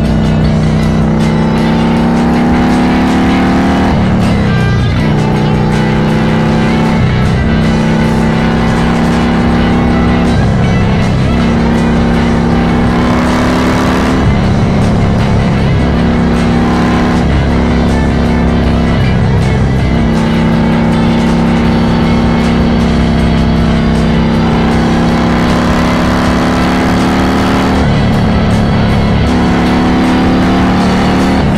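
Harley-Davidson Iron 1200 Sportster's air-cooled 1200 cc V-twin running steadily at highway cruising speed through a Cobra El Diablo 2-into-1 exhaust, with wind and road noise. Music is mixed loudly over it.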